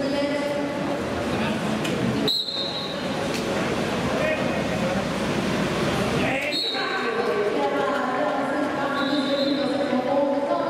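Indistinct voices echoing in a large indoor hall, some of them held on long steady tones.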